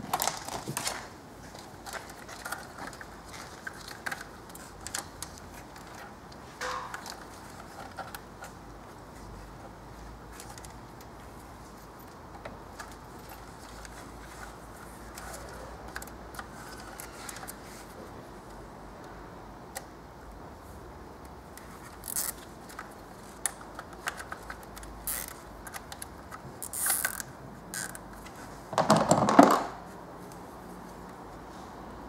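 Nylon cable ties being ratcheted tight around wiring in an engine bay, with scattered small clicks and rustles of plastic and loom handled by hand. Near the end comes a louder brushing rub of about a second, the loudest sound here.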